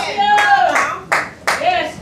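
Hands clapping in four sharp claps, roughly three a second, mixed with voices calling out.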